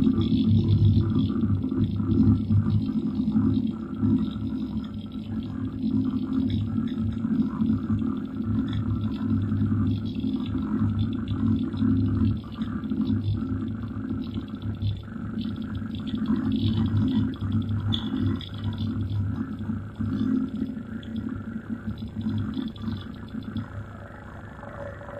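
Experimental electronic music from a hand-patched electronics rig: a low drone that stutters and cuts in and out irregularly, with a fainter higher buzz above it. It eases off a little toward the end.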